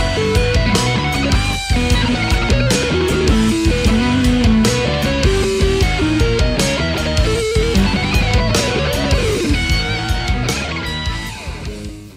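Ibanez electric guitar playing a lead solo full of string bends, with notes gliding up and back down in pitch. The playing tails off near the end.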